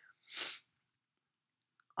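One short, sharp in-breath by the speaker between sentences, about half a second in.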